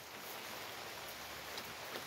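Light rain falling, heard as a faint steady hiss with no distinct events.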